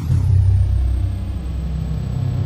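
Outro logo sting: a loud, deep drone that starts suddenly. A thin high whine falls in pitch over the first half second and then holds steady.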